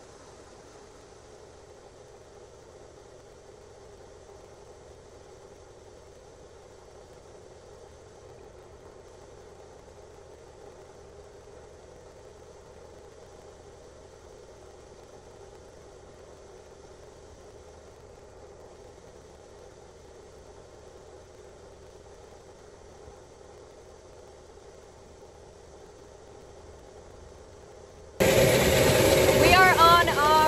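Grain bin unloading auger running while it pours corn into a grain trailer: a steady, fairly quiet mechanical hum. Near the end it gives way abruptly to a much louder woman's voice close to the microphone.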